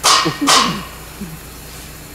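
A dog barking twice, two loud, sharp barks about half a second apart.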